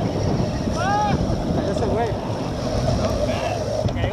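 Wind buffeting the microphone of a bicycle-mounted camera, with road noise, while riding. A short high-pitched shout cuts through about a second in.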